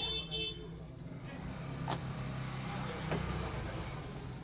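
Road traffic rumbling steadily, with a short vehicle horn toot at the start and two sharp clicks later on.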